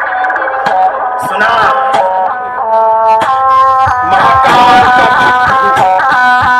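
Loud DJ remix music played through a tall stacked speaker wall of four bass and four mid cabinets, during a speaker check. A lead melody of short, stepped notes runs through it and gets louder in the second half.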